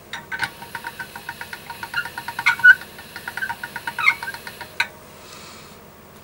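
Hand-cranked pasta machine rolling a sheet of polymer clay at thickness setting 1: the crank turns with a quick run of squeaky clicks, about five a second, with a few louder squeaks, stopping a little before 5 seconds in.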